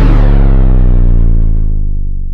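Electronic logo sting sound effect: a loud, deep synthesized bass hit ringing on as one low tone with overtones and slowly fading out.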